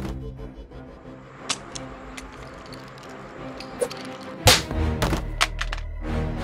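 Tense film-score music, with a handful of sharp hits over it, the loudest about four and a half seconds in, followed by a few quicker ones.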